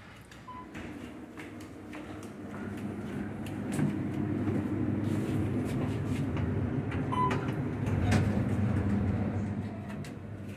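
Passenger elevator car ascending: a low rumble with rattles and clicks that builds up and eases off near the end as the car slows. A short high chime sounds shortly after the start and again about seven seconds in.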